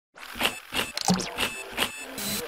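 Sound effects of an animated radio-show ident: a run of short electronic hits and blips, about three a second.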